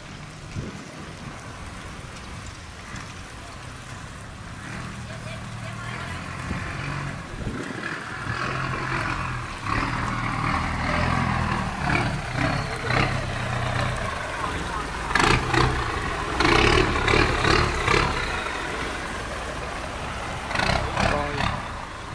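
Inboard engine of a loaded cargo boat running as the boat motors close by through the canal sluice, getting louder over the first half, with people's voices over it in the second half.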